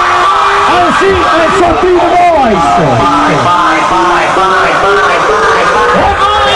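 Loud club dance music with a voice that slides down in pitch several times, then holds one long note.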